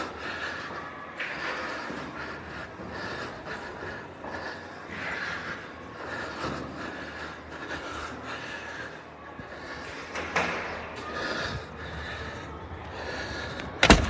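A person breathing hard and walking after climbing stairs, with rustling from handling the phone, and one sharp knock near the end.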